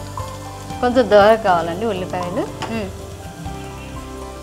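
Oil sizzling in an open pressure-cooker pan as a wooden spatula stirs through it, with a brief spoken word in the middle.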